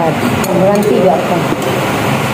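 Voices talking, over a steady background hum.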